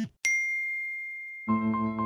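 A single bright ding, one clear high tone that rings and fades over about a second. About a second and a half in, keyboard music starts, with a held low note under a quick run of higher notes.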